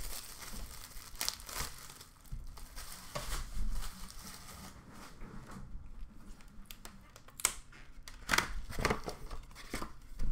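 Plastic shrink-wrap being torn and pulled off a sealed cardboard trading-card box, crinkling and crackling irregularly, with the loudest crinkles near the end.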